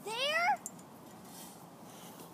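A single short rising vocal cry, meow-like, about half a second long, at the start.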